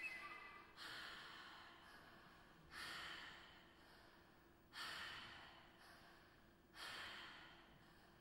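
Contemporary chamber ensemble making soft, unpitched, airy noise sounds: four sudden swells of hiss about two seconds apart, each fading away.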